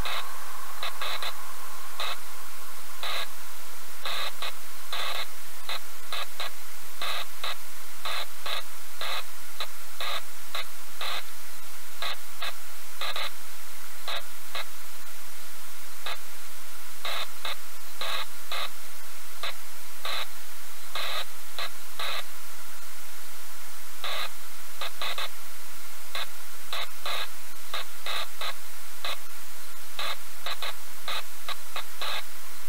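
Loud steady hiss with frequent irregular crackling clicks and a faint steady whine underneath, like static.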